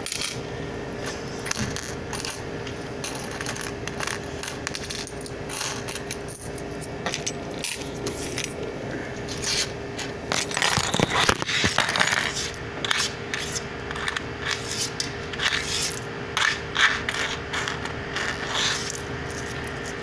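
Coins clinking and clattering in quick, irregular clicks while change is handled at a shop till, busiest about halfway through. A faint steady hum runs underneath.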